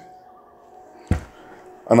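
A pause in a man's scripture reading, with a faint steady hum and a single short thump about a second in; his voice resumes at the very end.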